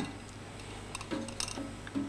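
A short sharp knock as the cocktail layering funnel is lifted off the glass. It is followed by a few faint clicks of handling over a low steady hum.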